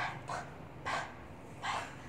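A woman sounding out the letter P as short unvoiced breathy puffs, 'p … p … p', about four of them, unevenly spaced.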